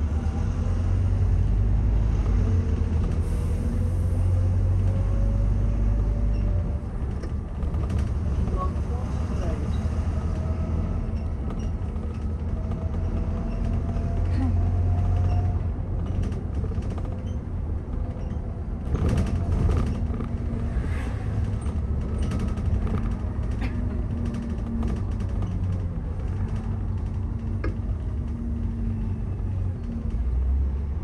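London double-decker bus heard from the upper deck while driving: a steady low engine rumble with a whine that rises as it gathers speed, twice, and rattles and creaks from the body, most around the middle.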